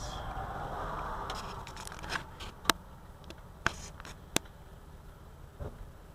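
Dashcam being handled inside a vehicle: a rustling hiss, then a few sharp clicks and knocks over a low steady rumble.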